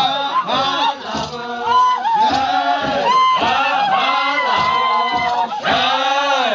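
A group of Naga tribesmen chanting together, their voices swooping up and down in repeated rising-and-falling calls about twice a second, with a higher voice holding a note for a moment near the middle.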